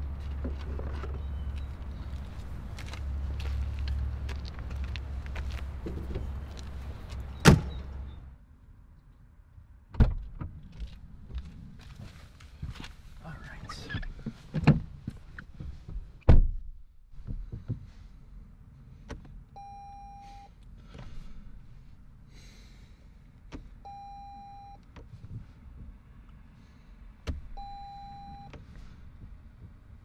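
A car door slams shut, and the low outdoor rumble drops away to quiet cabin sound. A few knocks of handling inside the car follow, then a short electronic tone sounds about every four seconds.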